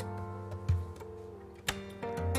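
Acoustic guitar chord notes ringing and slowly fading, played in a percussive style that uses the guitar body like a drum: a low thump on the body about two-thirds of a second in and a sharp tap near the end.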